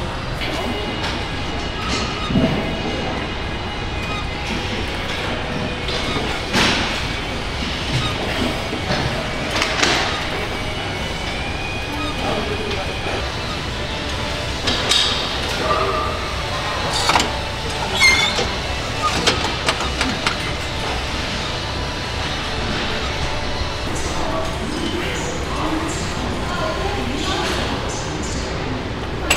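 Gym ambience: a steady background din broken by scattered short clanks and knocks, with indistinct voices in the background.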